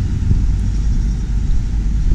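Steady low rumble of outdoor street noise from road traffic, with no distinct events standing out.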